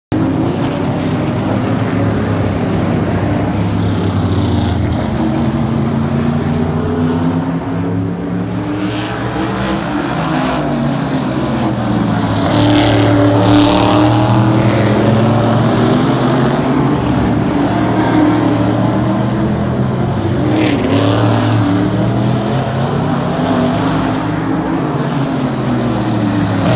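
Several open-wheel race cars running hard around an oval short track. Their engine notes overlap and rise and fall in pitch as the cars pass close by, and the sound grows louder about halfway through.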